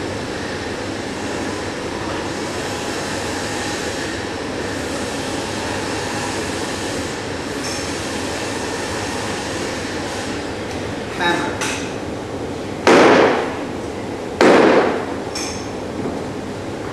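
Claw hammer striking a wooden board on a workbench: a couple of light knocks, then two heavy blows about a second and a half apart near the end. A steady hiss runs underneath.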